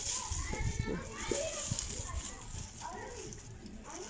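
Children's voices and chatter in the background, with no close voice.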